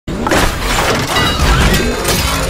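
Channel-logo intro sting: a loud crashing, shattering sound effect over music, cutting in abruptly at the very start.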